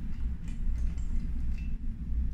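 Faint small metal ticks of connecting screws being turned by hand into a smart lock's door handle, over a steady low hum.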